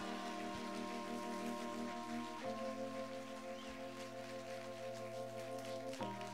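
A live band holding sustained chords, which move to a new chord about two and a half seconds in, over a steady crackling, hissing wash.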